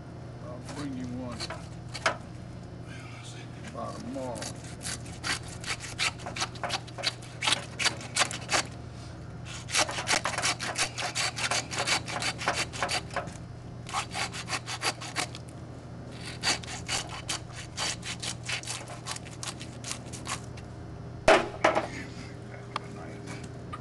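Hand saw cutting through a deer carcass: fast rhythmic back-and-forth strokes in runs of several seconds, with short pauses between them.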